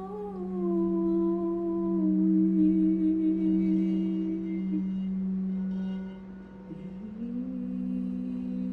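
Crystal singing bowl being rimmed with a mallet, giving a steady sustained tone. Above it a voice holds a tone that slides down slightly over the first two seconds and fades out about halfway, and a new, slightly higher held tone comes in near the end.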